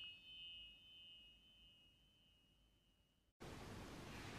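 Near silence: the last of an intro bell chime rings away in the first second. About three and a half seconds in, faint steady room hiss begins.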